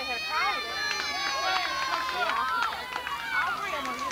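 Young girls' voices shouting and calling out over one another, with one long drawn-out call in the first couple of seconds.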